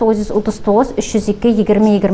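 Speech only: one voice talking steadily without a pause.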